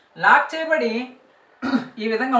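A man's voice in a small room: a short spoken phrase at the start, a brief pause, then speech resumes near the end with a rough, breathy onset.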